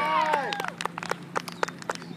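Sideline spectators shouting and cheering with raised voices, then scattered hand clapping from a few people, sharp irregular claps about six or seven a second through the second half.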